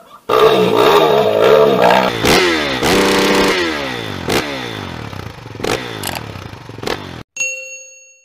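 Motorcycle engine revving again and again, its pitch sweeping up and down, with several sharp clicks through it and slowly fading. Near the end a short bright bell ding, the sound of a subscribe-bell animation.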